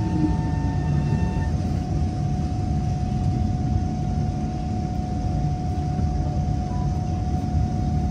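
Kawasaki C151 metro train heard from inside the carriage while running along the track: a steady rumble with a constant whine above it.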